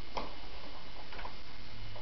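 A few light plastic clicks from a baby's push-along walker toy as it is pushed over carpet, the loudest just after the start and another a little past the middle, over a steady low hum.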